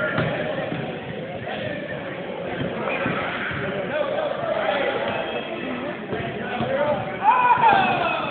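Several people talking over one another. About seven seconds in, one voice rises above the rest with a loud call that climbs and then falls in pitch.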